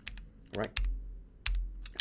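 Typing on a computer keyboard: a few separate keystrokes with short gaps between them, the louder ones with a dull thud.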